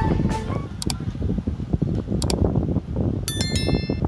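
Storm wind rumbling and buffeting on the phone's microphone. Over it come two sharp clicks about a second and a half apart, then near the end a bright chiming ding: the click-and-bell sound effect of a like/subscribe button animation.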